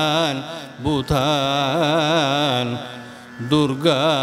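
A solo voice singing a Sanskrit invocation prayer in Carnatic style, holding long notes with a wavering pitch. It breaks off briefly twice, about half a second in and near three seconds, before carrying on.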